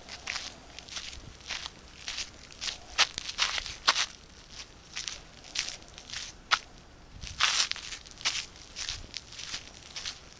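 Footsteps in strap sandals on gritty pavement: short scuffs and crunches of grit underfoot, coming irregularly about two a second.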